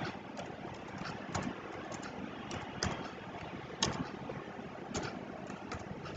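Computer keyboard being typed on: faint, short key clicks at an irregular pace, a few a second, over a steady low hiss.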